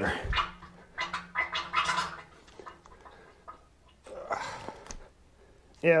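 Hand pump forcing oil into a Caterpillar D315 diesel engine's oil system to pre-lube it, gurgling in three spells as oil and air are pushed through the passages; the pump is really hard to push.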